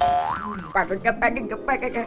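Cartoon "boing" sound effect at the start: a springy tone that wobbles up and down for about half a second, marking the magic wand breaking.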